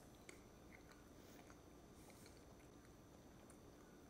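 Near silence, with faint chewing of a mouthful of soft food and a few tiny mouth clicks.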